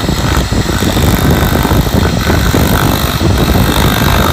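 A 2.2 kW (3 hp) electric motor running at about 2,800 rpm with a wooden board pressed against its spinning steel shaft. The wood rubs on the shaft in a loud, rough, steady grind.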